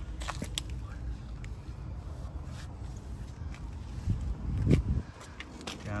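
Footsteps on the yard pavement with low rumble and clicks from a handheld phone being carried, and a louder low swell about four and a half seconds in.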